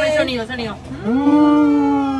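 Brief voices, then about a second in a person hums one long, steady closed-mouth "mmm" of approval while tasting the flan.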